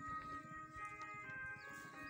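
Faint background music with held notes that change pitch about once a second.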